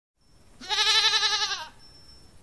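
A single goat bleat lasting about a second, with a quavering pitch, starting about half a second in.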